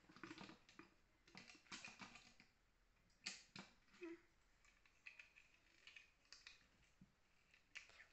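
Faint, irregular clicks and light rattles of plastic Lego bricks being handled and fitted together.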